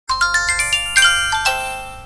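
Short chiming intro jingle: a quick run of rising notes, then two chords that ring out and fade before cutting off suddenly.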